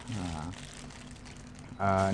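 Faint rustling of clear plastic wrap as a packaged phone bag is picked up and handled, between two short spoken "ha"s.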